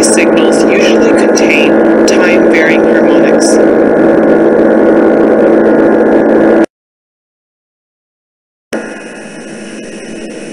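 A recording of speech buried under loud, steady jet engine noise, with a low hum and steady tones, is played back; the speech is barely audible through the noise. It cuts off suddenly about six and a half seconds in. After two seconds of silence, the RLS adaptive noise canceller's output begins, much quieter, with residual engine noise still left as the filter starts to converge.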